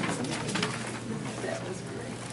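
Quiet meeting-room sound: low, indistinct voices with a few light clicks and rustles.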